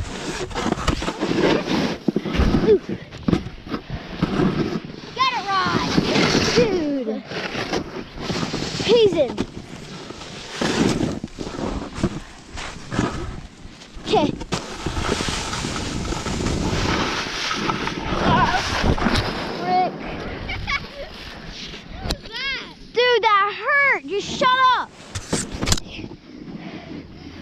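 Snowboard sliding and scraping over snow, with rough wind and rushing noise on the camera microphone and scattered scrapes and knocks. High-pitched voices call out a few times, most of all near the end.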